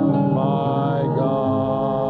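A congregation singing a slow worship chorus together, several voices holding long notes.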